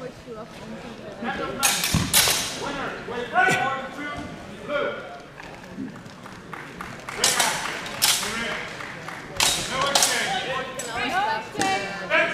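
Swords clashing and hitting during a fencing exchange: sharp ringing cracks in pairs about two seconds in, and again from about seven to ten seconds in. Shouting voices come between the strikes.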